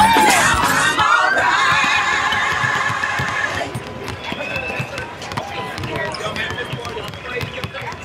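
A gospel song ends on a held vocal note with vibrato that stops about three and a half seconds in. A basketball is then dribbled on a hardwood court, bouncing in a steady rhythm.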